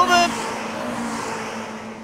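Honda Integra Type R DC2 race cars passing by on a track: a steady engine note with a hiss of tyre and wind noise that slowly fades as the nearest car goes past.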